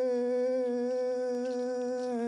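A voice holding one long, steady chanted note in a Ye'kwana ceremonial dance song.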